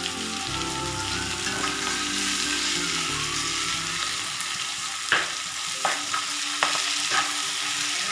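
Chicken pieces and tomato wedges sizzling steadily as they fry in a black kadai. In the second half a spatula stirs through them, with a few sharp scrapes and knocks against the pan.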